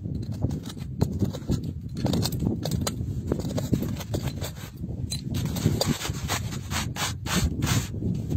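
Small metal chisel scraping and chipping at crumbly stone and packed dirt, a steady run of rough scrapes broken by sharp clicks, the clicks coming thicker near the end.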